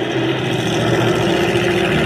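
Drag-racing altered's engine running steadily at low speed, a continuous drone, heard from a live stream played through computer speakers.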